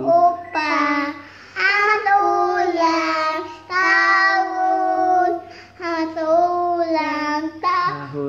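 A young girl singing a birthday song in Indonesian, drawing out long held notes between short breaths.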